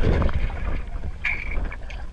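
Muffled underwater rumble of water being churned by swimmers and a swimming otter, picked up by a camera submerged in a pool. It is loudest at the start and eases off, with a few faint clicks and a brief high tone about a second in.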